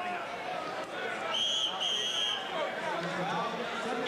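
The ring's round signal sounds twice at the start of round four, two short, even, high tones back to back about a second and a half in, over crowd chatter in the arena.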